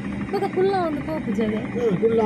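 A woman talking inside a car cabin, over a steady low hum from the car.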